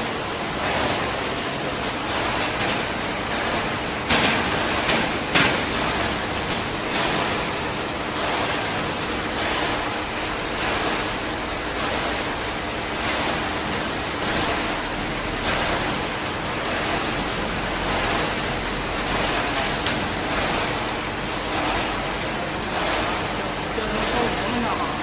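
A steady rushing noise throughout, with a few sharp clicks of galvanized wire cage mesh and clip pliers being worked, loudest about four and five seconds in.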